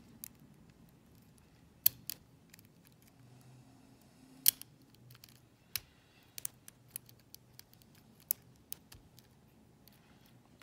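Lock pick working the pin stack of a brass Gerda Euro cylinder: scattered sharp metallic clicks. The loudest come about two and four and a half seconds in, with lighter ticks toward the end.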